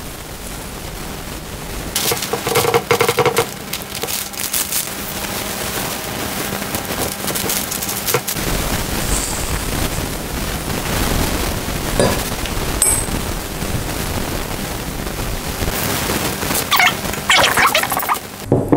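A metal spoon scraping and clinking against a glass mixing bowl as sticky sesame-flour dough is scooped out, with handling of a parchment-lined baking tray as portions are set down and pressed. There is a louder run of clinks about two seconds in and again near the end.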